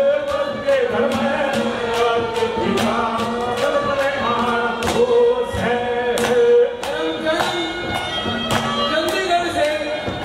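Live Haryanvi ragni folk music: a man singing over harmonium, with a steady percussion beat of about two strokes a second.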